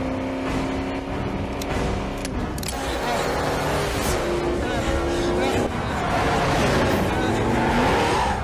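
A Pontiac GTO muscle car's V8 engine revving hard as the car accelerates away, rising in pitch through the second half.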